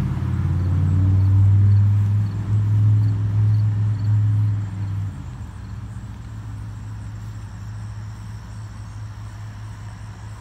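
A motor vehicle's engine running close by: a loud low rumble for about five seconds that drops off suddenly to a quieter steady hum.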